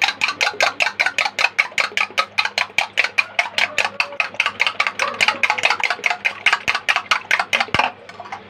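Two raw eggs being beaten by hand in a bowl, the utensil clicking rapidly and evenly against the bowl at about six strokes a second.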